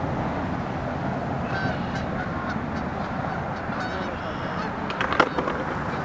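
Geese honking, several short calls between about a second and a half and four and a half seconds in, over a steady low rumble. A couple of sharp clicks near the end.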